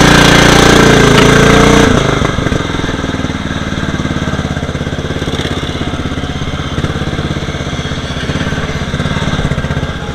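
Murray riding lawn mower engine working hard as the mower ploughs through a water hole, with loud splashing for the first two seconds. Then the engine runs steadily with an even firing beat as the mower drives on through mud.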